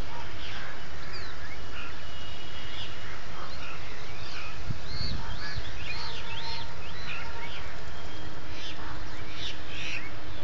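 Many small birds chirping and calling at once, with a busy run of short rising-and-falling calls in the middle, over a steady low rumble.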